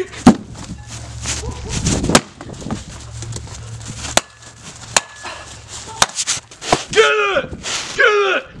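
A metal baseball bat striking something on frozen ground: several sharp, separate knocks spread a second or two apart.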